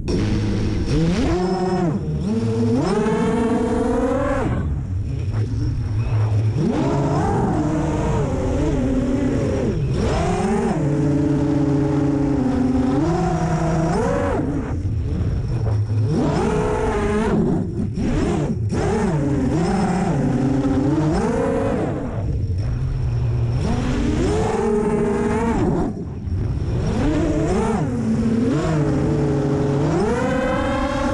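Five-inch FPV racing quadcopter's four Lumenier 2400 kV brushless motors and three-blade props, heard from the onboard camera, whining up and down in pitch every two to three seconds as the throttle is punched and eased in flight, with wind noise underneath.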